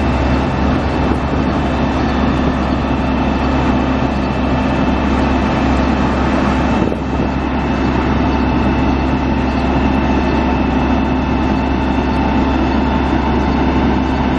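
Caterpillar 3126 inline-six turbo diesel of a Freightliner FL80 truck idling steadily, with a brief dip in level about halfway through.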